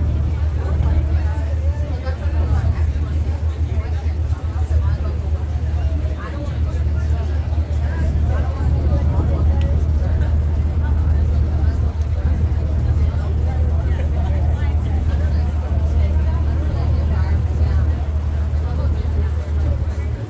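A boat's engine running steadily under way, a loud, deep drone that fades away right at the end, with passengers' voices chattering over it.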